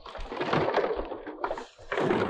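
Boots wading through shallow water, splashing with each stride, with a brief lull near the end.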